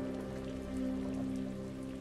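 Steady rain falling, under soft background music of a few low notes held throughout.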